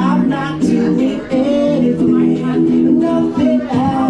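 Man singing karaoke into a microphone over a pop backing track, holding long sung notes.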